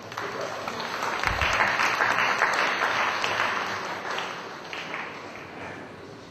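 Audience applauding: many hands clapping together, swelling about a second in and fading away over the last couple of seconds.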